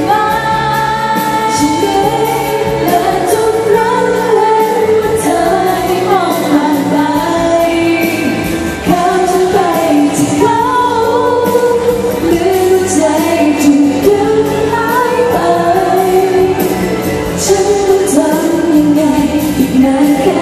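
A woman singing a pop ballad live into a handheld microphone over band accompaniment, with the melody rising and falling in long sung phrases.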